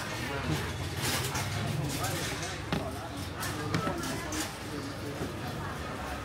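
Busy street-market background with voices talking over a steady low hum, with a few short sharp clicks and knocks, the clearest about a second in and near the middle.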